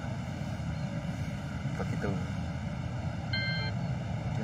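Steady low rumble of outdoor background noise, with a brief high-pitched tone a little after three seconds in.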